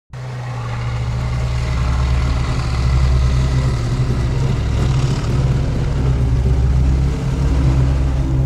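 A T-54/55 tank's V12 diesel engine running steadily as the tank drives, a deep, loud, even engine note that fades in over the first couple of seconds.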